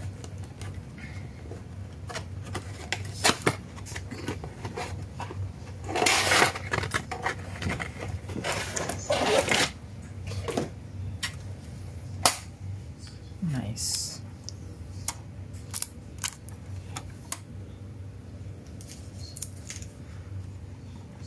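Cardboard box and plastic packaging of a die-cast model car being handled and opened: scattered clicks and crinkles, with two longer bouts of rustling about six and nine seconds in.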